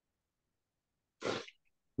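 A single short, sharp burst of breath noise from a man, a little over a second in, with silence around it.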